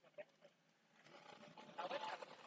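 Near silence: faint background noise, with faint indistinct sound picking up in the second half.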